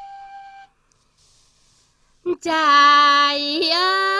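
Tày folk singing. A long held high note ends just after the start, a gap of near silence follows, and about two and a half seconds in a voice comes in on a long held lower note that rises slightly and breaks into wavering, ornamented turns.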